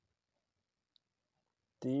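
Near silence with one faint, brief click about halfway through; a man's voice begins a word near the end.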